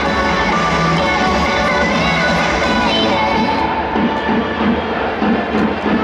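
Music played over a baseball stadium's public-address speakers, with crowd noise beneath it; a regular pulsing beat comes in about halfway through.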